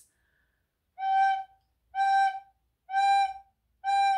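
Plastic soprano recorder playing four short separate notes on the same pitch, about one a second, with silence between them. Each note is started by a fresh puff of breath instead of the tongue, the 'puffing' fault in recorder technique, which makes the notes choppy.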